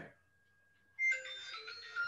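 A phone ringtone, an electronic melody of steady beeping notes, starts about a second in after a moment of silence. It plays quietly.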